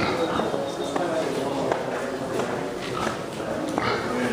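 Indistinct talking from people in the background, not loud or clear enough to make out words.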